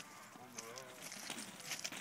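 Faint murmur of voices, with a few light knocks and scuffs in the second half.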